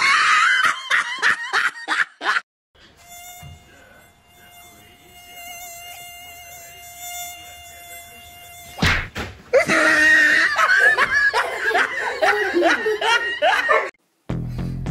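A mosquito's high whine played from a smartphone, steady and slightly wavering, from about three seconds in. It follows about two seconds of laughter, and from about nine seconds in it gives way to a louder stretch of sound that wavers up and down in pitch.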